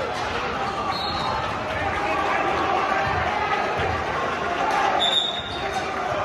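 Basketball being dribbled on a hardwood gym floor during play, under steady chatter from the crowd and bench. Two short high squeaks come about a second in and near the end.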